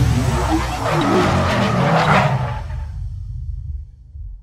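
Sound effect for an animated logo intro: whooshes over a heavy low rumble, swelling about one to two seconds in and then fading away near the end.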